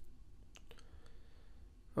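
A few faint clicks from computer input, a keyboard and mouse being used, within the first second over low room tone.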